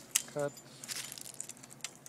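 Hand pruning shears snipping through grapevine wood: one sharp snip, followed by fainter clicks and crackles of blades and wood.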